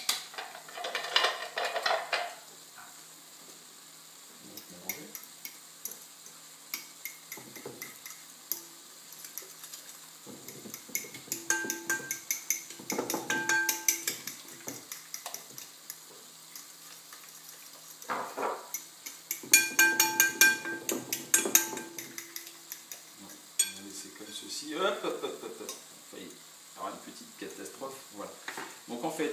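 A fork beating an egg, cream and bread-crumb mixture in a glass bowl, clinking rapidly against the glass in two main spells with the bowl ringing briefly.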